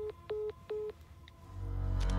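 Three short electronic beeps of a mobile phone call ending, evenly spaced within the first second. A low rumbling drone of score music swells in near the end.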